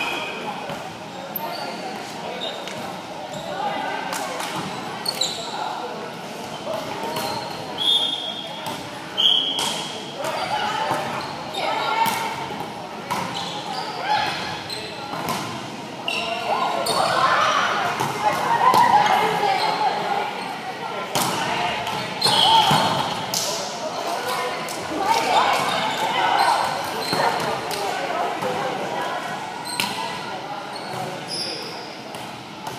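Indoor volleyball game in a large echoing gym: the ball is struck and bounces again and again, sneakers give short high squeaks on the hardwood court, and players' voices call out, more of them in the second half.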